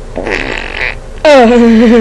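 A loud comic noise: a short hiss, then a long buzzing tone that drops in pitch and holds low with a slight waver.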